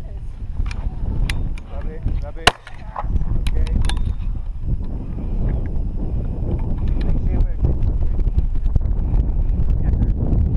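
Wind buffeting the microphone, with one sharp crack about two and a half seconds in and a few lighter clicks just after.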